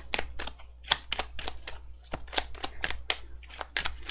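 A deck of tarot cards being shuffled by hand: an irregular run of quick card clicks and slaps, several a second, over a steady low hum.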